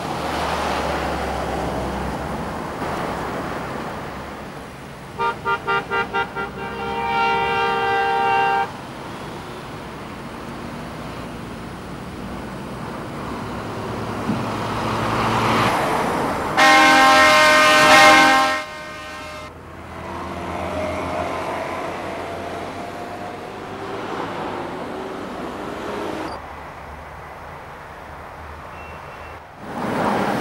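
Highway traffic passing steadily, with vehicle horns sounding over it: a quick string of about six short toots, then a held honk, and later a louder long honk, the loudest sound here.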